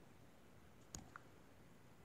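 Near silence with two faint, short clicks a fifth of a second apart, about a second in.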